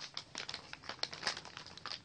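Soft plastic packaging crinkling as it is handled, a run of small irregular crackles.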